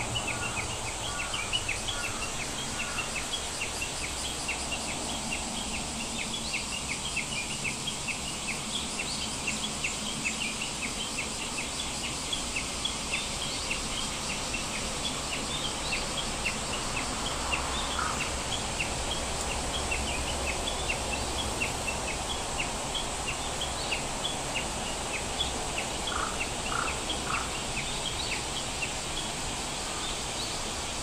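Many birds chirping continuously in short, quick notes over a low steady background noise, with a brief run of three lower chirps near the end.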